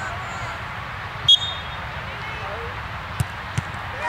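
A referee's whistle gives one short, shrill blast about a second in, signalling the penalty kick. Near the end come two short thumps as the ball is kicked and reaches the goalkeeper.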